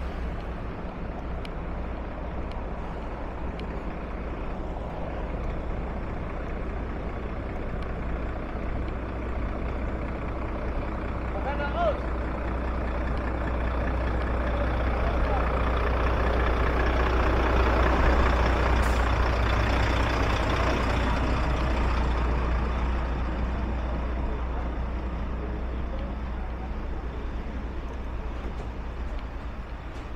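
Large truck's diesel engine running at idle: a steady low rumble that grows louder to a peak just past the middle, then fades away.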